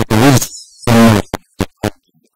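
A man's voice through a handheld microphone, loud and choppy, the sound cutting out abruptly between syllables.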